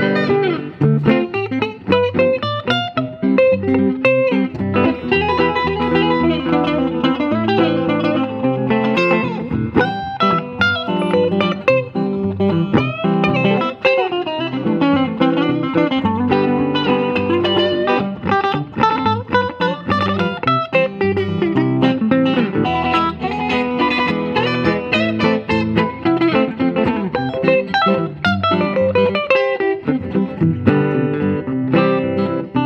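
Two electric hollow-body guitars, an orange Gretsch with a Bigsby and a sunburst archtop, played together through amplifiers in an improvised duet: held chords low down under moving single-note lines, with no break in the playing.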